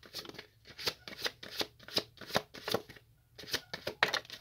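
Tarot cards being shuffled by hand: a run of quick, crisp card snaps and slaps, several a second, with a short pause about three seconds in.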